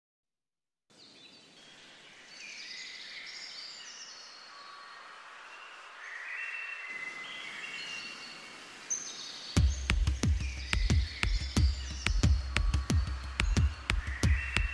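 Small birds chirping and singing. After about nine seconds, music comes in with a quick, sharp percussive beat over a low bass, and it is louder than the birds.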